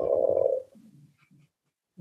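A man's voice holding a drawn-out "whoa" for about half a second, then fading into faint low sounds.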